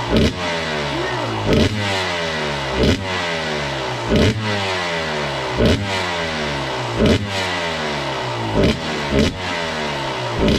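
TM 250 two-stroke dirt bike engine running, with the throttle blipped about every second and a half and the revs falling away after each blip. The bike is being brought back to life after five years of sitting.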